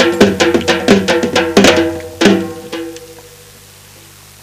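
Dhol drums beaten with sticks in a fast rhythm, the strokes ringing; the playing stops with a last stroke a little past two seconds in and dies away.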